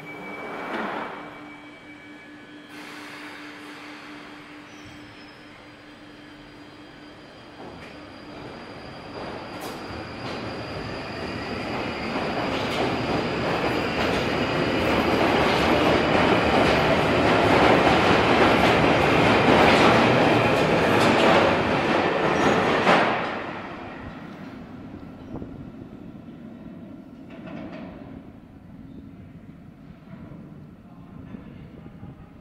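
London Underground Northern Line 1995-stock train departing the platform. Its rumble and wheel noise build steadily as it accelerates out, grow loud, and drop off sharply about three-quarters of the way through as the last car clears the station.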